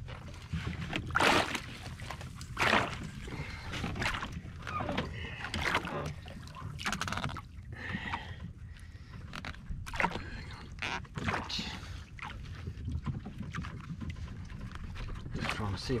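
Water splashing and slapping at the side of a small aluminium boat as a hooked stingray is brought up to the surface beside it, with irregular sharp knocks and splashes over a steady low rumble of wind and water.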